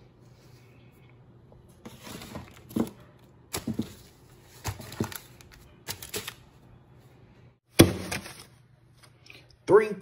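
Banded stacks of paper money being dropped and piled onto a tabletop: a run of soft thumps with paper rustle starting about two seconds in, then one sharp, louder thump near the end. A faint steady hum lies underneath.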